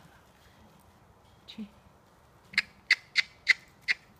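A person clucking with the tongue to urge a trotting horse on: five short, sharp clicks in quick succession, about three a second, starting about halfway through.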